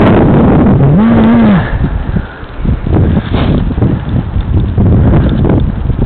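Loud buffeting and rumble on the microphone of a camera carried at speed along a path, with irregular knocks and bumps. About a second in, a short hummed voice sound rises and falls.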